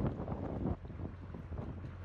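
Wind buffeting the microphone over the low, steady hum of a narrowboat's engine and the wash of fast-flowing river water.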